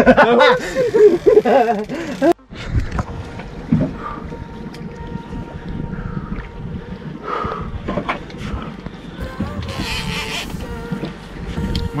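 Men's voices and laughter, then after an abrupt cut a steady rush of wind and sea around a small open boat, with faint music under it and a short hiss near the end.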